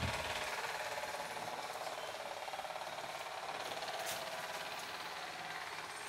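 Machinery running steadily in the background, a fast, even mechanical rattle with no pauses.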